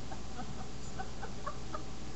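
A woman laughing softly in a string of short, quick pulses, over a steady low hum.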